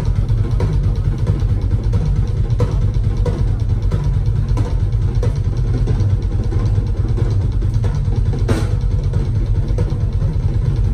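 Drum kit solo played live: a dense, continuous low rumble of tom and bass drum rolls, with occasional sharper hits cutting through.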